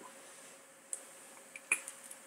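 A few small, sharp clicks, one about a second in and a louder one near the end, from a vape tank and e-juice bottle being handled while the tank is filled.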